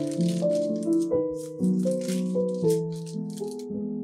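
Background instrumental music, with short bursts of parchment paper crinkling and rustling on a baking tray as hands press and shape biscotti dough logs; the rustling stops shortly before the end.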